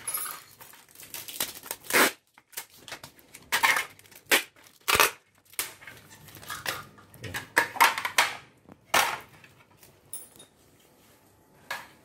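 Hands handling paper and plastic: irregular rustling, crinkling and knocking in short separate bouts, quieter for the last couple of seconds.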